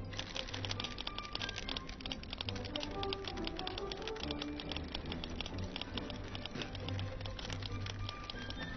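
Fast run of metal ticket-punch clicks, many a second and unbroken, as a train conductor punches a ticket with a flourish, over orchestral background music.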